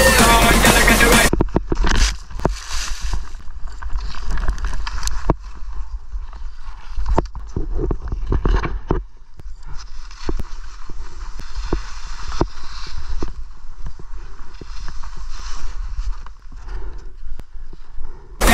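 Background music cuts off about a second in, leaving the raw action-camera sound of a skier: low wind rumble on the microphone, skis scraping over packed snow, and several sharp knocks as the skier goes down in a fall.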